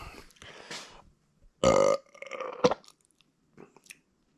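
A man retching: one loud heave about one and a half seconds in, followed by a few smaller gagging sounds, bringing up a little vomit.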